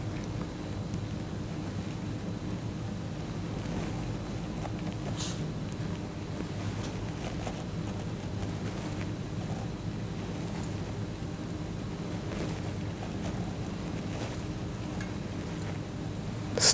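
Steady low mechanical hum with a faint hiss, the background of an industrial pump hall, broken by a few faint clicks.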